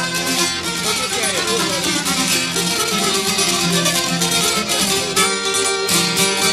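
Instrumental break in an Albanian folk wedding song: long-necked lutes (çifteli and sharki) plucked in a rapid, steady rhythm, with violin.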